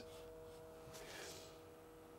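Faint steady musical note from a Hornby Class 395 Javelin model train set locomotive running slowly at half power: a constant whine of a couple of held tones.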